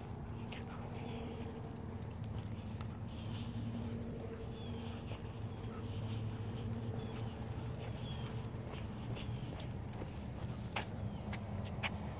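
A Blue Bay Shepherd on a leash whimpering faintly, eager to get over to another dog. Two light clicks come near the end.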